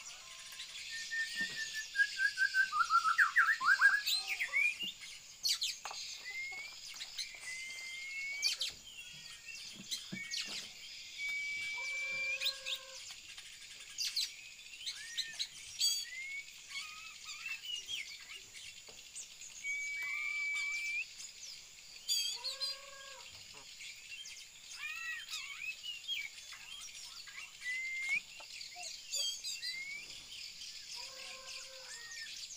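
Caged songbirds chirping and singing: many short chirps and rising whistles, a loud, fast falling trill about one to four seconds in, and a few lower, fuller calls later on. A steady high hiss runs underneath.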